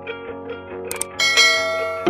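Background music with a short click about a second in, followed by a bright ringing chime that fades out: the click and notification-bell sound effects of a subscribe-button animation.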